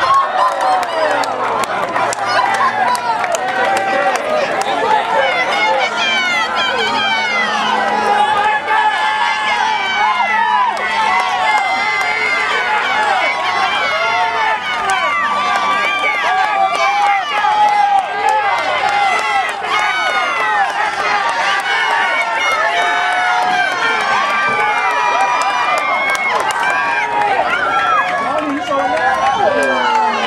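Trackside crowd cheering and shouting for runners finishing a 1600 m race, many voices overlapping without a break.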